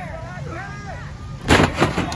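A wrestler slammed down onto the wrestling ring, a loud crash of body on the ring's mat and boards about one and a half seconds in, followed by a second, smaller bang. Crowd voices can be heard before it.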